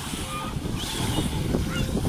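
Wind buffeting the microphone over choppy sea and surf, with faint, short distant calls.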